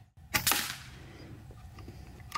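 A .22 FX Impact M4 PCP air rifle firing one shot: a sharp crack about a third of a second in, a second crack a split second later, then a short fading ring. The pellet leaves at about 928 feet per second after the macro wheel was turned down from 16 to 14.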